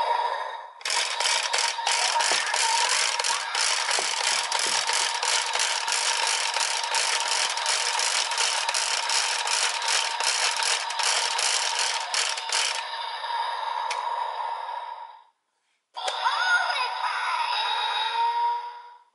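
DX Tiguardora toy's wheel being spun, clicking rapidly for about twelve seconds over the toy's electronic sound effect. The electronics carry on for a few more seconds and then cut off. After a short silence, another electronic sound effect with sliding pitches plays near the end.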